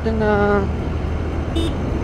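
Steady low engine and road rumble of a scooter being ridden, with wind on the microphone. A voice is heard for the first half second, and there is a brief high beep about one and a half seconds in.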